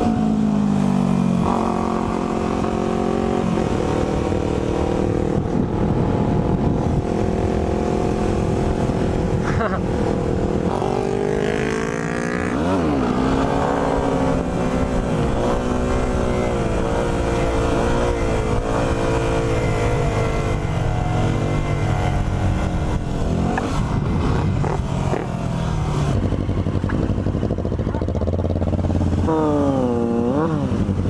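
Yamaha WR250R single-cylinder engine heard from the rider's seat, revving up and down through the gears with its pitch climbing and dropping repeatedly. About twelve seconds in it revs up sharply and then falls back, and around the middle the bike lifts its front wheel in a wheelie.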